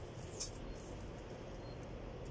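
A stick being picked up from leafy ground cover: one brief, faint rustle about half a second in, over a low, steady outdoor background rumble.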